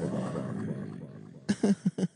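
A man making a long, wordless, groaning vocal noise that fades out about a second and a half in, followed by short bursts of voice near the end.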